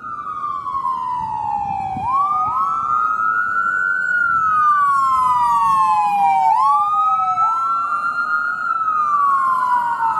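Ambulance electronic siren on a slow wail, each cycle rising fairly quickly and falling more slowly, about every four and a half seconds, with two wail tones running slightly out of step. It grows louder about two seconds in as the ambulance passes.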